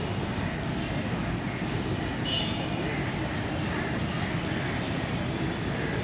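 Steady rumble of city traffic, with no breaks or single loud events.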